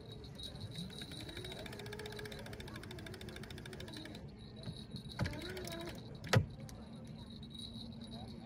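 Manual downrigger being worked by hand, its ratchet clicking rapidly for a few seconds, followed by a single sharp metallic click about six seconds in, with a faint voice underneath.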